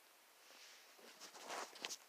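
Handling noise: a short flurry of rustling and clicking as the phone and a bottle are moved about, starting about a second in and ending in a sharp click near the end.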